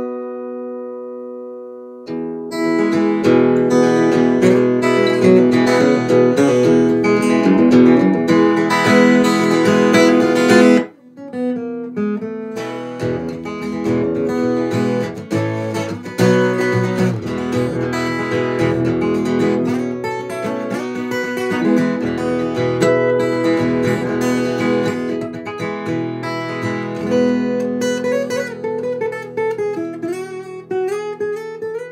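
Breedlove Legacy Concertina E acoustic-electric guitar heard through its LR Baggs Anthem pickup and an AER Compact 60/30 acoustic amplifier set flat, so the tone is close to the guitar's own. It is strummed and picked: a chord rings down over the first two seconds, then loud, busy playing breaks off suddenly about eleven seconds in and goes on more softly to the end.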